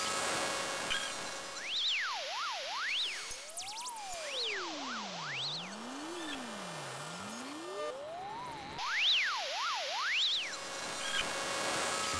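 Electronic intro sound effect: pure tones sliding up and down in pitch in quick zigzags, a slower, lower sweep beneath faster, higher ones, over a steady hiss.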